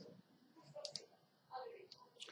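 Near silence, with a faint muttering voice and a few soft clicks about a second in and again near the end.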